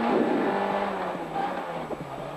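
Rally car engine heard from inside the cabin, its note dropping in pitch and getting quieter as the revs come down.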